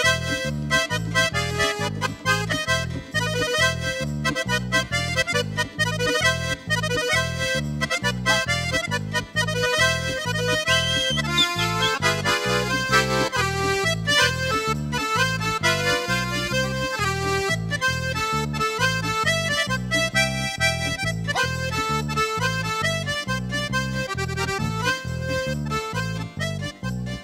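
Red button accordion (bayan) playing a lively instrumental melody over a steady, evenly repeating bass beat, with hand drums struck along in time.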